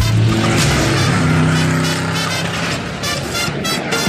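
Loud rushing, engine-like noise with low tones stepping upward in pitch, laid over music as a sound effect. It eases a little near the end.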